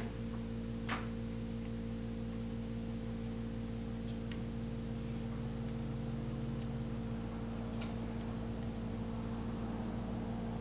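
Steady electrical hum with a few faint, short ticks scattered through it, as a resistor's leads are worked into a solderless breadboard.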